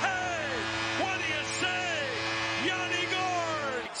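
Arena goal horn blowing a steady low chord after a home goal, under a cheering crowd with repeated loud falling whoops. It cuts off abruptly just before the end.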